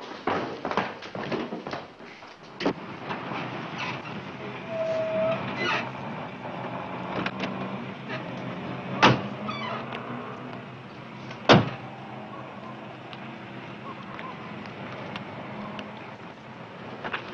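Car engine running steadily, with two sharp car-door slams about two and a half seconds apart in the middle, the second the louder.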